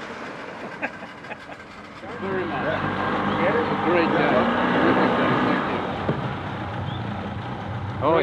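Yamaha outboard motor running low and steady, coming in about two seconds in, with people talking over it.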